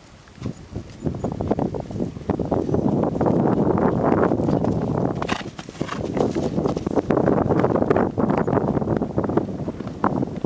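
Hoofbeats of an Appaloosa/Thoroughbred cross mare cantering on a dry dirt arena, a rapid run of thuds that gets louder from about a second in as she passes close by.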